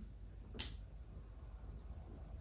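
Quiet room tone, with one brief sharp hiss about half a second in.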